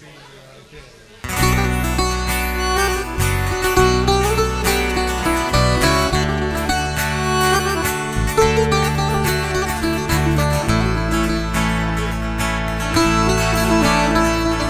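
Live Greek folk-pop band playing an instrumental introduction on trichordo bouzouki, accordion, strummed acoustic guitar and bass guitar, starting abruptly about a second in after a low murmur of voices.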